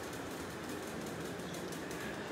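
Steady, low background noise with no distinct event.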